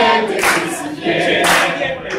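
A group of people singing together, clapping along on the beat about once a second.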